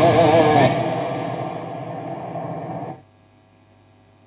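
Overdriven electric guitar (Gibson SG) played through a Marshall JMP-1 preamp, 9100 power amp and 4x12 cabinets: held notes with wide vibrato at first, then ringing out and fading with effects trails. The sound cuts off suddenly about three seconds in, leaving only a low amp hum.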